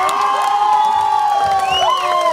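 An audience cheering, many voices holding long whoops and shouts together at a steady, loud level.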